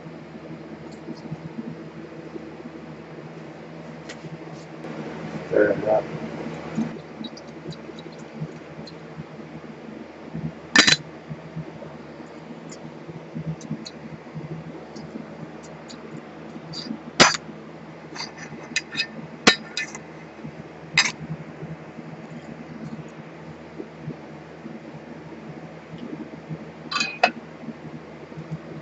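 Laboratory glassware clinking a handful of times, sharp single clicks spread out over a steady low hum, as a glass separatory funnel and beaker are handled.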